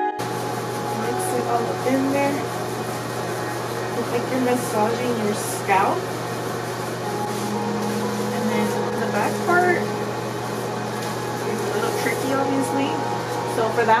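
Steady low hum of room noise, with faint, indistinct voices now and then.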